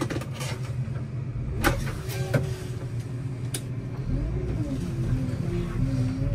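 Manitou telehandler engine running, heard from inside the cab, back up after a loss-of-communication fault, with several sharp clicks. About four seconds in the engine note strengthens and rises in pitch as the machine starts to move.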